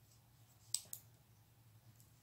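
Metal knitting needles clicking against each other as stitches are worked: one sharp click a little under a second in, then a softer one just after.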